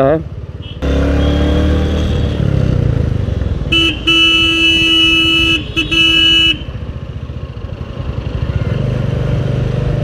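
Royal Enfield Classic 350's single-cylinder engine running as the motorcycle rides in traffic, getting louder about a second in. Near the middle a vehicle horn sounds one steady blast of nearly three seconds, broken briefly near its end.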